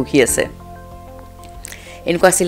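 A woman singing unaccompanied into a close microphone. A sung phrase ends about half a second in, then a pause of about a second and a half in which only faint steady tones remain, before the singing resumes.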